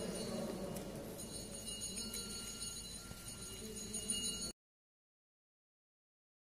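Faint ambience inside a church with a group of visitors, with light bell-like ringing. The sound cuts off abruptly to silence about four and a half seconds in.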